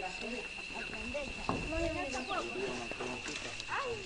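Several people's voices talking over one another, no single speaker clear, over a steady high-pitched whine.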